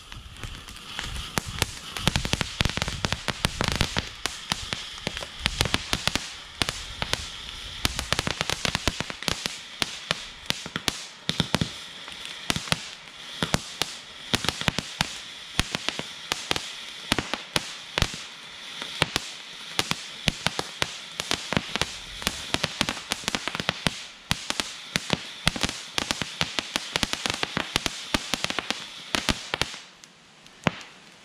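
Ground fountain firework burning: a steady hiss shot through with rapid crackling pops, which stops right at the end.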